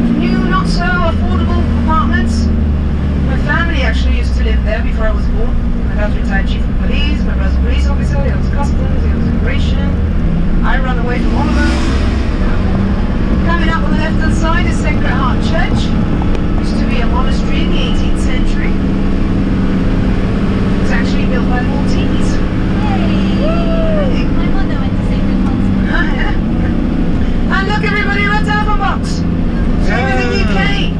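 A minibus engine running steadily, heard from inside the cabin while it drives, with people's voices talking over it.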